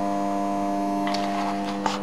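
Steady electrical hum of the powered-up CNC milling machine: several fixed tones held at a constant level with no change in pitch.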